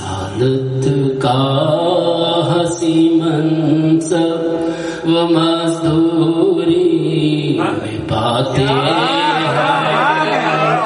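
A man's voice chanting Urdu devotional verse through a microphone, held on long, wavering melodic notes over a steady lower drone. Near the end the melody breaks into quick rising-and-falling runs.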